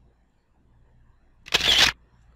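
A short camera-shutter-like slide-animation sound effect, one brief burst about one and a half seconds in, after near silence.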